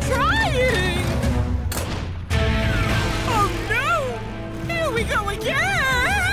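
Cartoon soundtrack: action background music under a woman's wavering, drawn-out cries of alarm. A brief rushing noise starts suddenly a little after two seconds in.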